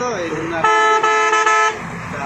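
A vehicle horn sounds in three quick blasts about a second in, a steady single pitch held for about a second in all. A man's voice is heard just before it.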